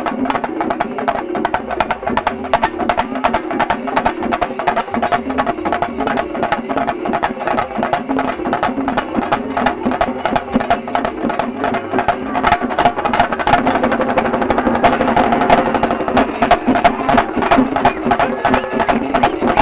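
Shinkarimelam percussion ensemble of chenda drums struck with sticks, playing a fast, dense, driving rhythm. The drumming grows louder about two-thirds of the way through.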